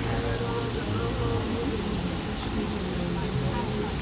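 Steady restaurant background noise, a constant hum with faint, indistinct voices from other people in the room.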